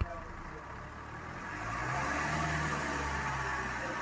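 Maruti Suzuki Ritz 1.3-litre four-cylinder diesel heard at the exhaust tailpipe, running at idle and then picking up a little about one and a half seconds in, where it holds a steady, slightly higher speed.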